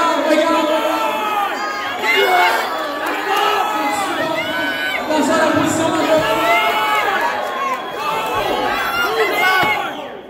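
Crowd of spectators shouting and cheering during an arm-wrestling match, many voices yelling over each other at once.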